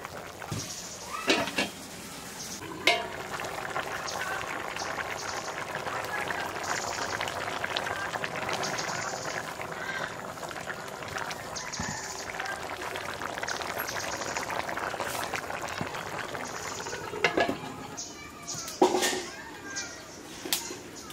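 Curry bubbling and simmering in an iron karahi over a wood fire, with a metal spatula knocking and scraping against the pan a few times in the first three seconds and again near the end.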